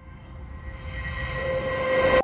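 Sound-effect riser for a logo sting: a noisy swell with a few steady tones, growing steadily louder.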